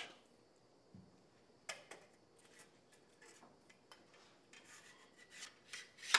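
Near silence broken by a few faint clicks and light rubbing as a gun-cleaning rod with a solvent-wetted bore brush and the rifle are handled, the clicks coming closer together over the last second and a half.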